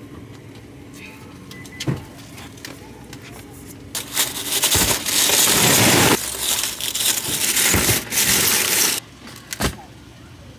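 Groceries being loaded into a car's cargo area: after a few quieter seconds, plastic packaging such as a wrapped case of bottled water rustles and crinkles loudly for about five seconds, with several sharp thumps as items are set down.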